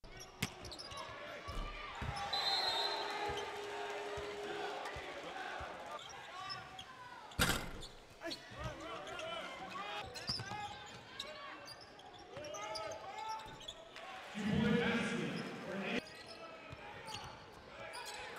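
Live game sound from a basketball court: a basketball bouncing on the hardwood amid the voices of players and crowd in the gym, with one sharp knock about seven seconds in.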